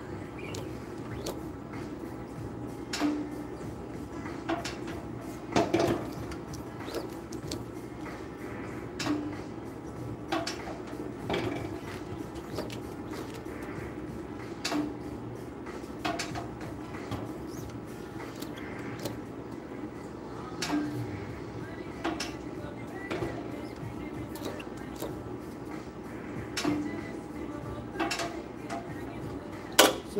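Manual screen-printing press at work: the aluminium screen frame knocking and sliding as it is lowered onto the platen, squeegeed and lifted. A sharp knock comes every second or two over a steady low hum.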